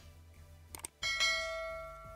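Subscribe-button animation sound effect: two quick mouse clicks, then a bell ding that starts suddenly about a second in and rings out, fading slowly.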